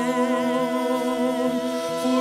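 Male voices singing one long sustained note together, held steady with a slight vibrato.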